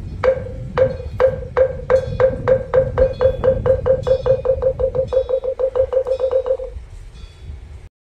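Moktak (Korean Buddhist wooden fish) struck in a roll that speeds up from about two strikes a second to about five and then stops near the end, the closing roll that ends a chant.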